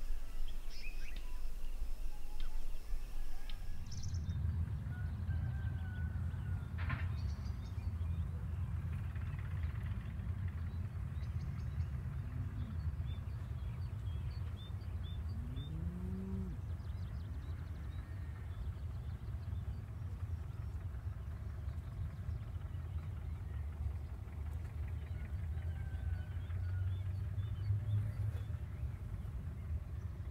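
Outdoor field ambience: bird chirps over a thin hiss, then a steady low rumble that comes in about four seconds in. A few short, low, rising-and-falling animal calls come in the middle.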